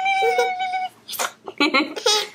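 A toddler's voice holds one long high note at a steady pitch for most of the first second. Short rising squeals follow near the end.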